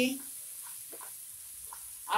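Diced vegetables and masala sizzling steadily in a frying pan while a spatula stirs them, with a few faint scrapes of the spatula against the pan.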